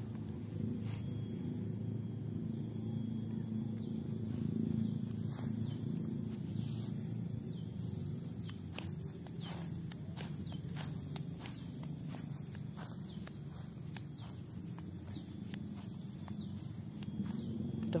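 Outdoor ambience while walking on grass: a steady low rumble with footsteps, and a run of short bird chirps in the middle.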